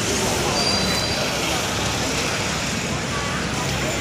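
Busy city street ambience: steady road-traffic noise with passers-by talking.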